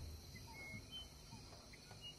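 Faint, quiet forest ambience with a few short, high bird chirps.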